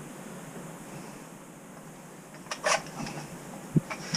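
Handling noise from a Ruger SFAR .308 rifle at the bench after a string of fire: a short clatter about two and a half seconds in, then a brief low knock near the end as the rifle is set down on the rest.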